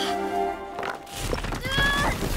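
Orchestral music stops about halfway through, followed by thuds and a short yelp from a cartoon young dinosaur as he tumbles down onto rocks.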